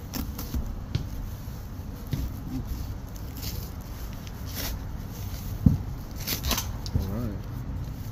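A folding knife slicing through packing tape on a cardboard box, with short scratchy cuts and a few sharp knocks as the box is handled; the loudest knock comes a little past the middle.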